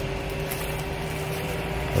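A steady hum made of a few held tones over a faint even hiss, unchanging throughout.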